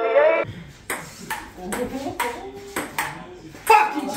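Table tennis rally: the celluloid ball clicks sharply off the paddles and table about seven times, roughly two hits a second, over background voices. The music ends just before the first hit.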